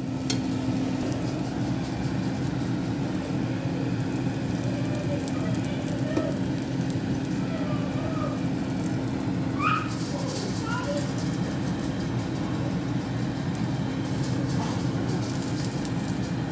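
Eggplant omelettes frying in hot oil in a nonstick pan: a steady sizzling crackle.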